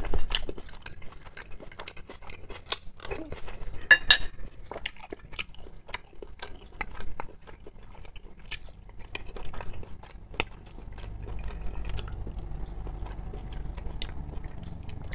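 Metal spoon and fork clinking and scraping against a china plate and a small glass bowl, a dozen or so scattered sharp clinks, with quiet chewing of pelmeni in between.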